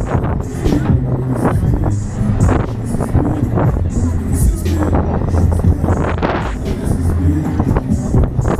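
Loud fairground ride music with a heavy bass line and a steady beat, played over a Huss Break Dance ride's loudspeakers and heard from on board the spinning ride.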